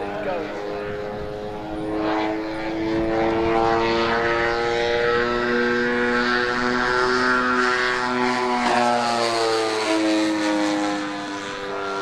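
A twin-engined RC model aeroplane's two propeller engines drone steadily in a fly-by, growing louder about two seconds in. Their pitch drops as the plane passes, about three-quarters of the way through, and the sound eases near the end.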